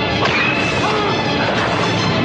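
Horror-film soundtrack: crashing, smashing sounds of a violent attack, with music underneath.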